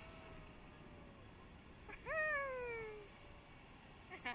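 A person's high-pitched squeal or 'whooo' about two seconds in, sliding down in pitch for about a second, after a fainter falling call at the start. Underneath is a faint wash of sea water as a wave breaks over the rocks and foams into the rock pool.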